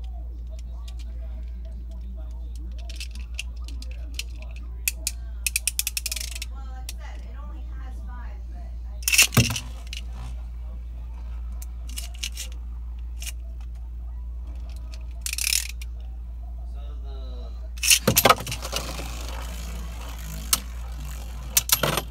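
Beyblade spinning tops launched into a plastic stadium: sharp launch bursts about nine and about eighteen seconds in, then the tops spinning and scraping around the plastic bowl and knocking together near the end. Light rattling clicks come earlier, before the first launch.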